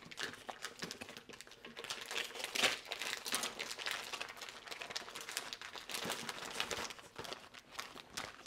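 Plastic packaging of ground lamb crinkling as the meat is squeezed out into a food processor bowl: a quiet, irregular run of small crackles.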